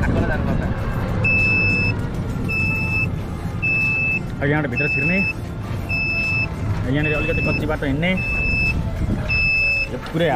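Vehicle warning beeper sounding a steady electronic beep about once a second, starting about a second in, over a vehicle's low engine rumble.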